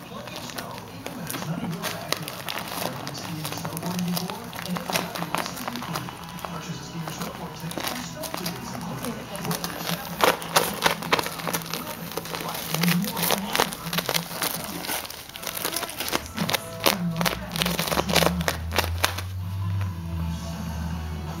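Paper crinkling and tearing as small dogs rip and nose at gift wrapping, in quick irregular crackles with louder rips around the middle and near the end. Music with a low steady bass comes in about three-quarters of the way through.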